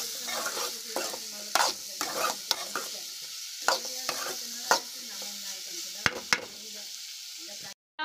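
Diced carrots sizzling in oil in a metal kadai while a metal ladle stirs them, with a steady sizzle and sharp scrapes and knocks of the ladle on the pan every second or so. The sound stops suddenly just before the end.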